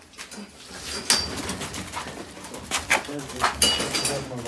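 Footsteps scuffing on a concrete floor, with several sharp clicks and knocks, the loudest about a second in and again near the end.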